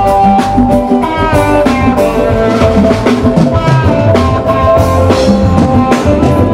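Live band playing a song at full volume, with drum kit and guitars.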